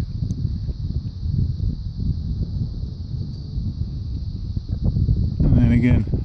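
Wind buffeting the microphone: a low, uneven rumble that rises and falls in gusts. A man's voice comes in near the end.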